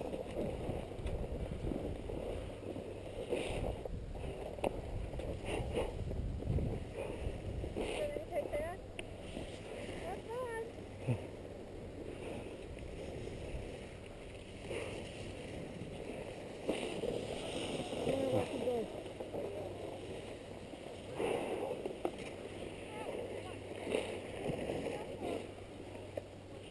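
Irregular wind rumble on the camera microphone and skis shuffling and scraping on packed snow while the skier stands at the top of a run, with faint, indistinct voices.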